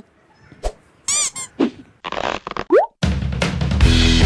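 A run of comic edit sound effects: short warbling boings and sliding pitches with gaps between them, then a brief hiss with a quick rising whistle. Music with a steady beat starts about three seconds in.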